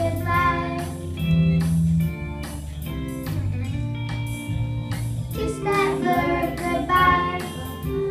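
Children singing a song to instrumental accompaniment. The voices drop out for a few seconds in the middle, leaving only the accompaniment, then come back in near the end.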